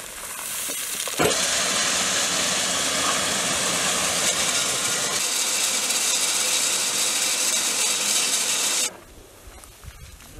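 Alkan Tarım almond hulling machine (patoz) running with almonds rattling through it and pouring out of its chute into a sack: a dense, steady, hiss-like clatter that swells about a second in and cuts off suddenly near the end.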